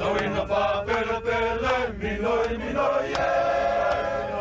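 A group of men singing together in chant-like harmony, holding long notes.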